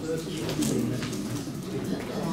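Indistinct murmur of several people talking at once in a meeting room, low voices overlapping with no single clear speaker.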